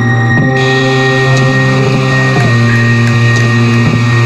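Loud instrumental black metal played live: held low notes with a full stack of overtones, changing about every two seconds, under a steady high hiss.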